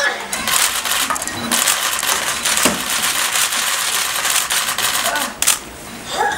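NAO humanoid robot getting up off its side: a dense run of rapid clicking and clatter from its servo joints and plastic limbs working against the pedestal. The clatter eases off just before the end, as the robot comes upright.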